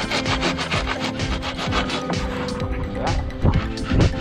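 A saw blade cutting through an expanded polystyrene (tecnopor) block in quick back-and-forth strokes, a rasping scrape, with background music underneath.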